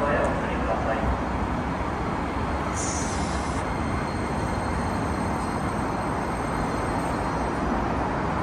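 Electric commuter train pulling into a station platform and slowing, a steady rumble of wheels and running gear, with a brief high squeal about three seconds in.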